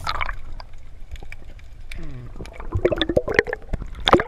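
Underwater sound picked up through a camera housing: scattered clicks and gurgling bubbles, with a short falling gurgle about halfway through and a louder bubbly burst after it, then another burst at the end.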